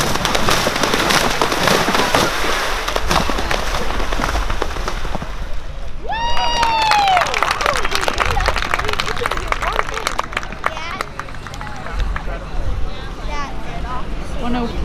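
Galloping horse splashing through a water jump, with water spraying and hooves striking, then hoofbeats on turf. A single high, falling call comes about six seconds in, and there are voices near the end.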